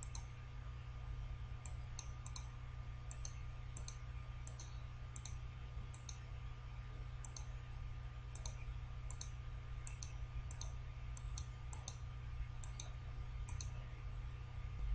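Computer mouse button clicks, two dozen or so, many in close pairs, as word boxes are picked up and dropped one after another. A steady low hum lies underneath.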